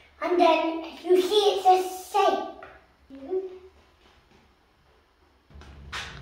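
A young child's voice, vocalising without clear words for about three seconds, then a quiet pause; a low rumble starts near the end.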